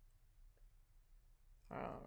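Faint sound of a pen writing a number on a paper worksheet, with one small click about half a second in, then a woman's hesitant "uh" near the end.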